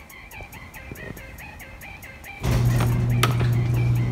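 Background music with a steady ticking beat. About two and a half seconds in, a louder steady low hum with a rushing noise comes in over it.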